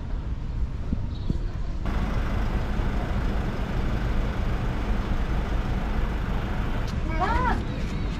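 Street ambience: a steady low rumble of road traffic, with the background noise stepping up about two seconds in. Near the end a high voice calls out briefly.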